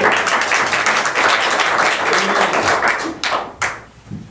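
A church congregation applauding, many hands clapping at once after a sung hymn, dying away about three seconds in with a few last separate claps.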